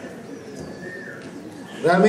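Low murmur of voices in a hall, with a man's voice starting loudly over the microphone and PA near the end.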